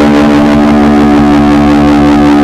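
Rock band holding one steady, loud final chord on electric guitar, ringing out at the end of the song.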